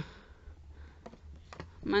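A few faint clicks from a plastic squeeze tube of cosmetic cream being handled over the back of a hand, over a low steady hum.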